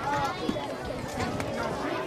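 Crowd chatter: many children's and adults' voices talking at once, with a few brief knocks mixed in.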